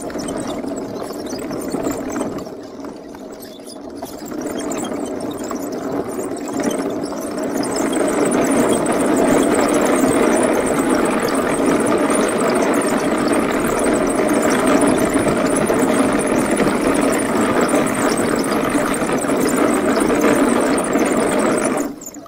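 Homebuilt wooden tank driving, its twin NPC Black Max electric drive motors and wooden-slat tracks running. The noise builds over the first several seconds and holds steady, then cuts out suddenly at the very end as the motor controllers shut down into thermal protection.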